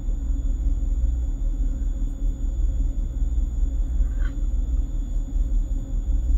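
Steady low rumble of background noise with a faint high-pitched whine, and a brief soft rustle about four seconds in.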